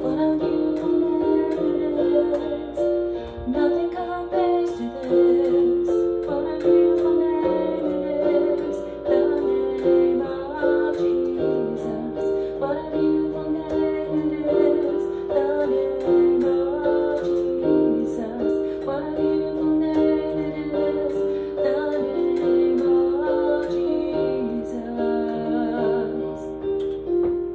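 A woman singing while accompanying herself on a keyboard, the chords held steadily under her melody.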